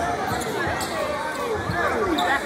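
Several voices talk and call out at once in a high school gym, with repeated low thuds underneath.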